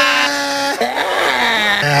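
Several men yelling a long, drawn-out 'whassup!' over telephones, the held shouts overlapping and sliding in pitch, with a laugh at the very end.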